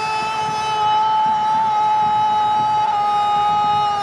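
A football commentator's long, held goal cry on one high, steady pitch, sustained for several seconds without a break and sagging slightly lower toward the end.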